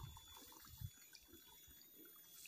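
Near silence with faint wet drips and small splashes of shallow muddy paddy water at an eel hole, as an eel is drawn out on a hooked wire; one drip a little before the middle stands out slightly.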